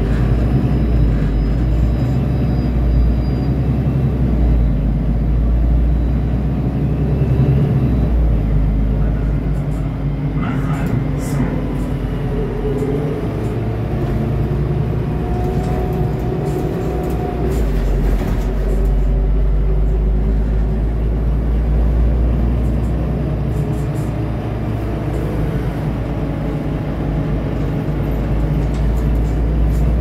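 Interior noise of a Metronit articulated bus under way: a steady low drone from the drivetrain and road, with occasional short rattles from the cabin.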